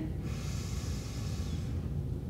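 A woman taking a long, deep inhale, a breathy hiss lasting about a second and a half, over a steady low room hum.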